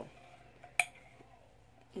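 A small glass candle jar with a metal lid being handled, giving one sharp click with a brief ring a little before halfway.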